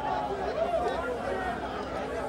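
Spectators around a boxing ring chattering, many voices overlapping into a steady crowd din.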